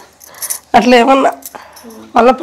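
A woman's voice: one short spoken phrase of about half a second, starting about three-quarters of a second in.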